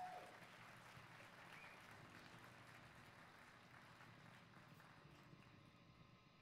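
Near silence: faint room tone, with a short fading tone just at the start.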